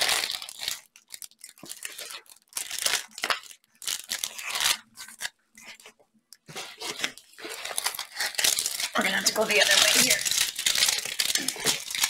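Clear plastic film on a diamond-painting canvas crinkling and rustling as the canvas is handled and flipped over. It comes in short bursts with brief pauses and grows denser near the end.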